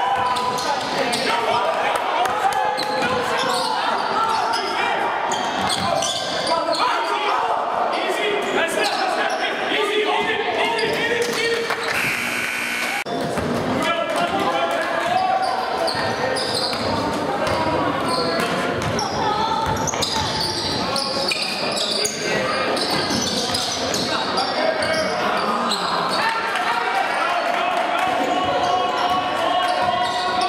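Spectators talking in an echoing school gym, with a basketball bouncing on the hardwood court. About twelve seconds in, a steady tone sounds for about a second.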